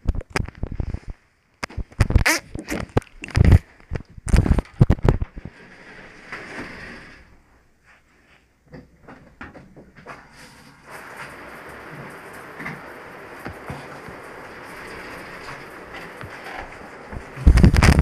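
Sharp knocks and clatters of the phone and its stand being handled, then a steady hiss from about eleven seconds in, with a loud bump near the end.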